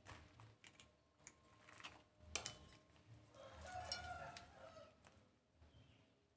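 Near silence: a few faint clicks and knocks as tools are handled, and a faint drawn-out animal call from about three and a half to five seconds in.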